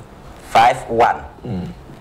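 Speech only: a man's voice in three short, separate syllables about half a second apart.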